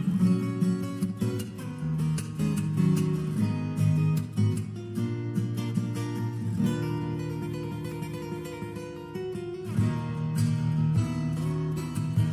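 Acoustic guitar played fingerstyle: a plucked melody over bass notes, with sharp percussive strikes and strums. It eases into a softer passage past the middle and picks up again near the end.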